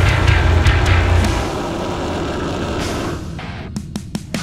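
Heavy deathcore music led by a distorted five-string bass guitar (Schecter Stiletto Stealth-5 through Neural DSP Parallax) tuned to drop A, with a thick low chug. After about three seconds the sound thins out into short, clipped hits with gaps between them.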